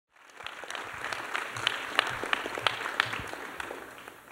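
Audience applauding: many hands clapping that swell just after the start and die away near the end.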